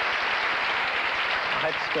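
Studio audience applauding, a steady even clatter of many hands, with a man's voice coming in near the end.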